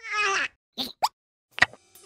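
Cartoon sound effects: a brief falling tone, then two short pops, the second rising in pitch, and a sharp tap near the end.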